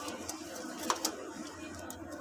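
Maranwala pigeons cooing low in a loft, with a couple of sharp clicks about a second in.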